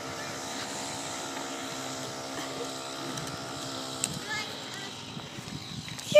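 A steady engine hum holding one even pitch, which fades out about five seconds in.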